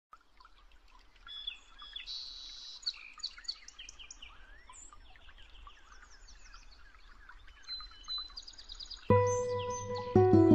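Several songbirds chirping and whistling in quick, overlapping calls. About nine seconds in, a loud, deep, held music note comes in suddenly and slowly fades.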